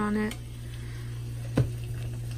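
Butter faintly sizzling in a hot frying pan over a steady low hum, with a single dull knock about a second and a half in.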